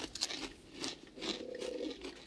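A person chewing crunchy Cheetos cheese puffs, with soft, irregular crunches, and a quiet closed-mouth 'mm' in the second half.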